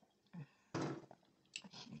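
Mouth sounds of someone tasting beer: a few short lip smacks and a breathy exhale.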